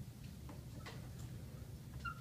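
Dry-erase marker writing on a whiteboard: a run of short, light strokes, about three a second, over a low steady room hum.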